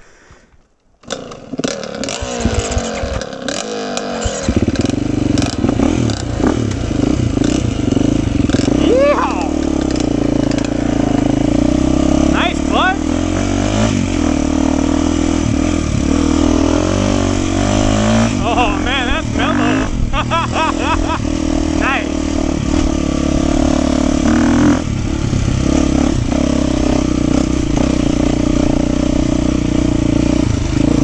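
Beta 390 Race Edition dirt bike's single-cylinder four-stroke engine running as the bike is ridden, its revs rising and falling with the throttle. The sound comes in loud about a second in and stays loud.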